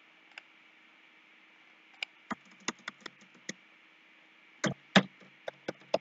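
Computer keyboard typing: an irregular run of key clicks starting about two seconds in, then a few more near the end, over a faint steady hum.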